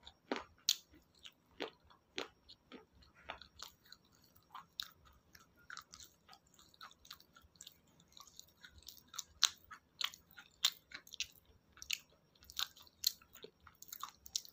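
Close-miked chewing of raw green vegetable salad: irregular crisp crunches, a few each second, growing louder and more frequent in the second half.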